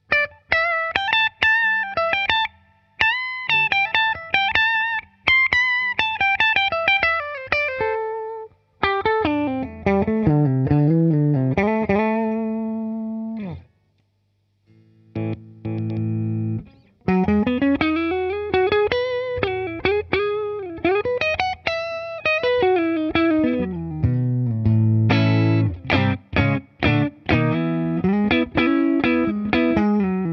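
PRS SE Custom 24 electric guitar played clean-to-lightly-driven through a Fender '68 Custom Deluxe Reverb reissue amp, still on its original PRS tuners before the Gotoh locking machine heads go on. Single-note lead lines with string bends and vibrato come first, then a short break, then lower chords and riffs.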